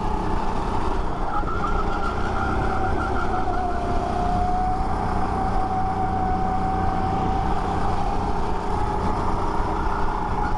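Rental go-kart engine running at racing speed, heard onboard over steady wind noise; its note dips slightly about three to four seconds in, then holds steady.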